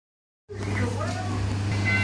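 A steady low electrical hum, with people's voices talking in the background. A brief electronic tone sounds right at the end.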